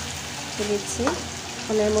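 Mixed vegetables sizzling steadily in oil in an aluminium karahi, stirred and turned with a wooden spatula. A voice sounds briefly about halfway through and again near the end.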